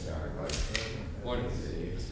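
Indistinct men's voices talking over one another, with two sharp clicks about half a second apart near the start.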